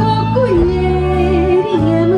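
Live folk band playing on stage: guitars and drums under a melody line that wavers in pitch.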